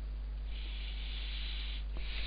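A steady low electrical hum under faint hiss. From about half a second in until near the end comes a soft breath-like hiss, a single breath into the microphone.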